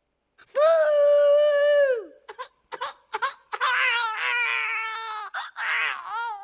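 A cartoon child's voice wailing: one long, high held cry that falls away at about two seconds, then a few short cries and a second, wavering wail.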